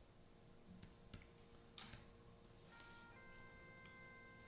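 Near silence with a few faint clicks, then, about three seconds in, quiet bagpipe music begins, with several steady held tones.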